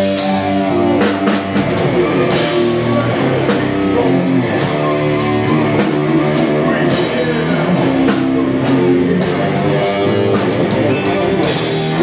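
A heavy metal band playing live: electric guitar, electric bass and drum kit, with sharp drum and cymbal hits over held guitar and bass notes.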